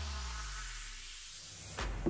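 Background music at a break in the track: held notes slide down in pitch and fade, then the beat comes back with a hit near the end.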